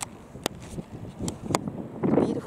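Wind rumbling on the microphone, broken by several sharp clicks.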